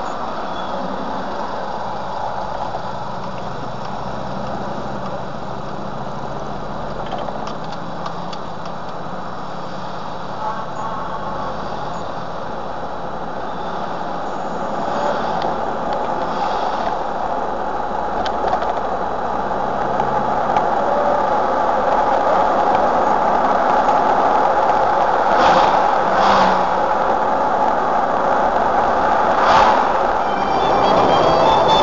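Jeep Wrangler engine and road noise heard from inside the cabin. It is a steady drone that grows louder from about halfway through as the Jeep picks up speed, with a few brief knocks near the end.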